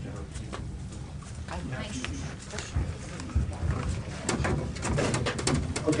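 Low murmur of voices in a meeting room, with a cluster of clicks and knocks near the end.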